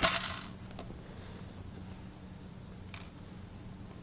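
A brief clatter of small hard objects being handled at the start, then a faint click about three seconds in, over a steady low hum.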